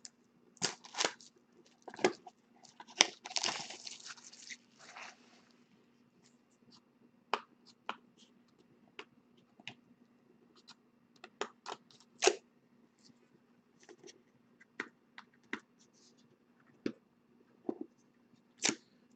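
Plastic wrapping being torn and crinkled off a trading-card box, heaviest about three to five seconds in, among scattered light clicks and taps of cardboard and cards being handled.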